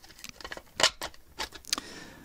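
White 3D-printed plastic leg being forced onto a mini R2-D2 body: a run of sharp plastic clicks and creaks, the loudest about halfway through, as the tight-fitting part snaps into place.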